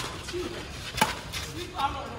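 Two sharp cracks of badminton rackets striking a shuttlecock, about a second apart, the second the louder, with faint voices between.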